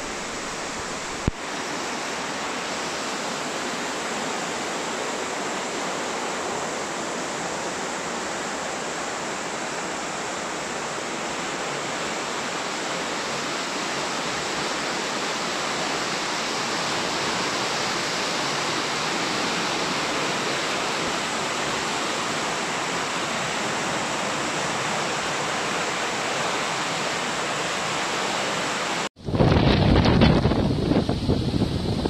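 Fast floodwater rushing and churning down a street in a steady, loud torrent, with one brief click about a second in. Near the end it cuts off sharply to wind buffeting the microphone.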